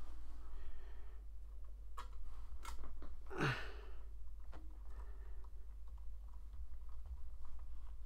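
Small screwdriver turning a tiny screw into a scale-model side trim panel: a few faint clicks and scrapes as the screw threads in, over a steady low hum.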